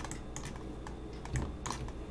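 Irregular clicks and taps of a computer keyboard and mouse, over a low steady hum.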